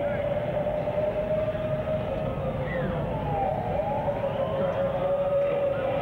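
Electric motors of children's battery-powered ride-on cars giving a steady, slightly wavering whine, with other whines sliding up and down in pitch as cars speed up and slow down, over a low rumble.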